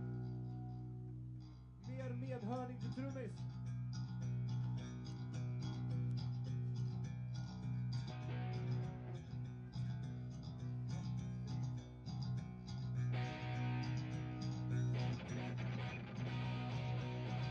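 Live punk band's electric guitars through stage amplifiers, sustained notes over a steady low drone, with a wavering, bending note about two seconds in.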